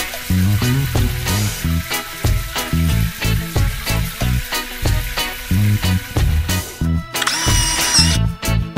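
Upbeat background music with a steady beat, over a hissing cartoon water-spray effect from a car-wash nozzle. Near the end the hiss stops and a bright, held chime-like tone sounds briefly.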